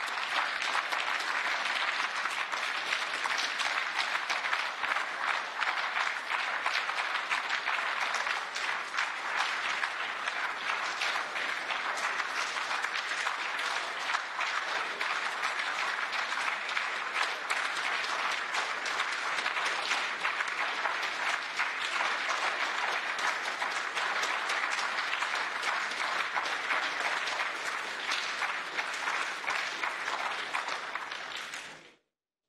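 A large audience applauding, many people clapping together in a steady, sustained ovation.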